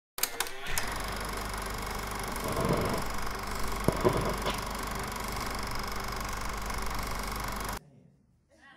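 A steady, rapid mechanical clatter with a low hum, opening with a few sharp clicks and cutting off suddenly just before the end; it is the sound laid under the title card.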